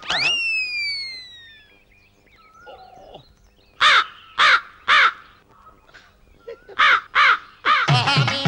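A crow cawing: three loud caws about half a second apart, then two more a couple of seconds later. At the start, a high tone slides down over about a second and a half.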